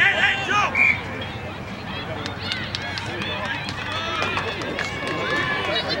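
Several voices shouting and calling at once across an outdoor rugby pitch, starting with a dismayed "oh no". A brief high tone sounds about a second in.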